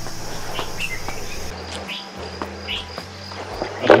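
Insects chirping steadily in a garden, a high continuous trill that turns to a pulsed chirp about a third of the way in, with a few short high chirps and faint clicks of plants being handled.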